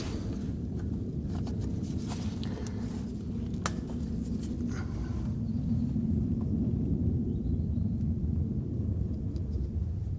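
Steady low outdoor rumble, with a handful of small sharp clicks in the first five seconds, the sharpest a little under four seconds in, from a spanner and tube being worked on a brake caliper's bleed nipple.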